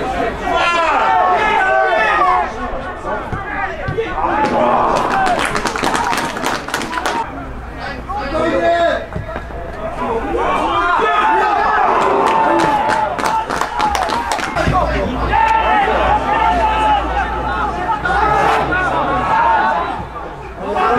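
Several men's voices calling and chattering over one another during play, with bursts of sharp clicks or claps in places.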